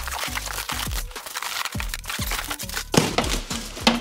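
Cardboard box wrapped in plastic film being torn apart, then packing foam being pulled off, crinkling and crackling, with a louder rustle about three seconds in, over background music.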